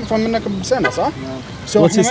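Speech only: men's voices in conversation.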